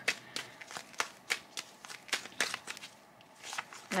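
Tarot cards being handled: a string of light, irregular clicks and flicks.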